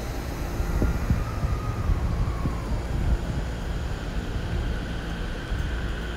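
Chuo-Sobu Line electric commuter train running alongside the platform: a steady low rumble with a few knocks, and a faint motor whine that rises slowly in pitch near the end.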